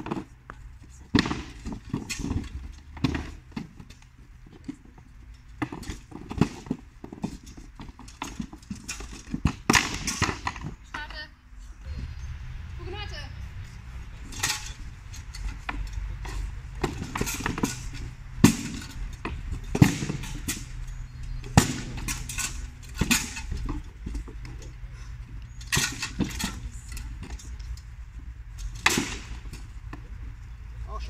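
Wooden practice spears clacking against each other and against wooden shields in sparring, a long run of sharp, irregular knocks, with a low steady rumble underneath from about twelve seconds in.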